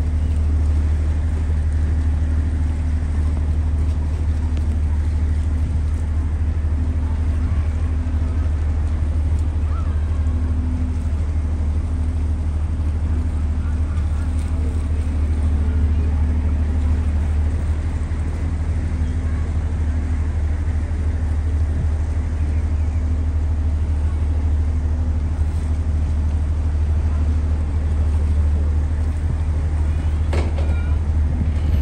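Steady low drone of a lake passenger ship's engine, heard from on board, holding an even pitch and level throughout.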